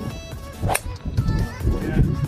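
A tee shot: a golf club strikes a teed-up ball once, a sharp crack about three-quarters of a second in, heard under background music.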